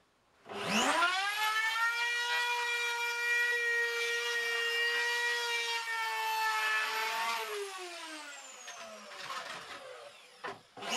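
Handheld electric router switched on, its motor rising in pitch within about a second to a steady high whine. It runs for about six seconds, then is switched off and winds down with a falling pitch.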